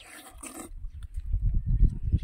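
A short wet slurp as a ripe mango is bitten and sucked, then a louder, irregular low rumbling that peaks near the end.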